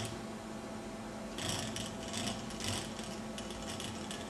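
Small geared DC motor of a two-wheeled self-balancing robot whirring in a few short bursts through the middle, over a steady low hum, as its PID controller drives the wheels back and forth to hold it upright.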